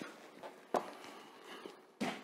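Faint handling sounds of a heavy hardcover book being set aside: a few soft knocks and shuffles, the sharpest a single knock about three-quarters of a second in.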